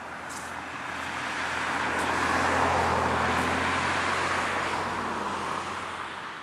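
A passing road vehicle, most likely a car: its tyre and engine noise swells to a peak in the middle and then eases off.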